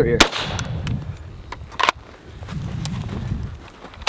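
.45 pistol shot fired at a flexible body armor plate, a loud sharp crack about a fifth of a second in with a brief echo. A second, quieter sharp crack follows just before the two-second mark.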